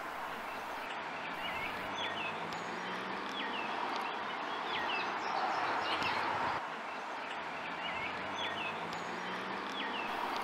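Outdoor ambience: a steady rushing hiss with a small bird chirping over it, short calls about once a second. The hiss falls away abruptly about two-thirds of the way through.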